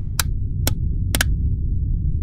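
Logo-sting sound design: a deep, steady low drone with four short, sharp clicks over it, the last two close together.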